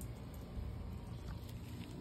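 Faint rustling and handling noise as a hand moves among leafy plants, with a few soft ticks over a low steady rumble.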